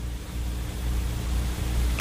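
A deliberate stretch of dead air on the radio broadcast: steady low electrical hum and hiss from the studio microphones, the hiss swelling slightly, with no voices.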